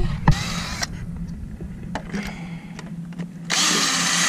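Power drill running in short bursts, driving screws into wood: a half-second burst, a faint brief one in the middle, and a longer burst of nearly a second near the end.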